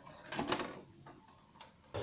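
VHS cassette pushed into a Panasonic video recorder, its loading mechanism taking the tape in with a short mechanical whirr and clicks about half a second in, then a faint click.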